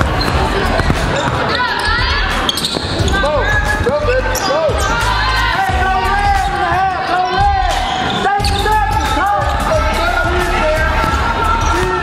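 Basketball game sounds on a hardwood gym court: a basketball bouncing and many short, rising-and-falling sneaker squeaks, thickest from about four to ten seconds in, with players' voices in the large hall.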